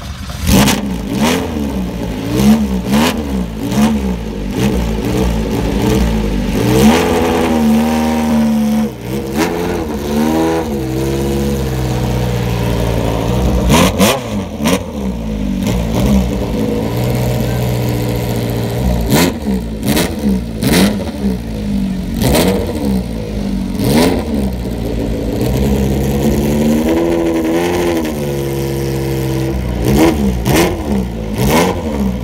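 Alfa Romeo Tipo 33 Stradale's mid-mounted two-litre V8 running, revved again and again in short throttle blips that rise and fall in pitch over a steady idle, with sharp cracks in between.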